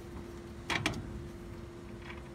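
Two quick clicks, close together less than a second in, from the front drum-brake hub and outer wheel bearing of a 1969 Chevy C10 being worked loose by hand off the spindle. A steady low hum runs underneath.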